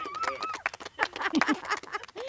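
Several people's voices around a campfire, laughing and calling out, with a high wavering call near the start.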